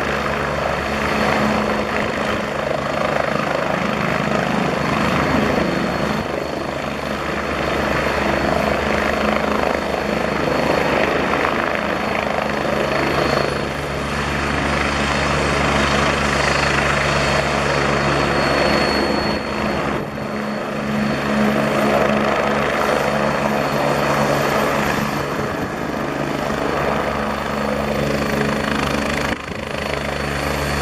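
Agusta A109S Grand twin-turboshaft helicopter hovering low and touching down. The main rotor and turbines run steadily throughout, with a constant high turbine whine over the rotor noise.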